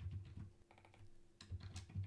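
Faint keystrokes on a computer keyboard, a quick irregular run of key presses while typing a line of code.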